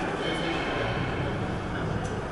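Steady background noise of a large hall: a low rumble with faint distant voices.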